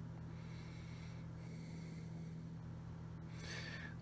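Low steady electrical hum, with a faint breath near the end.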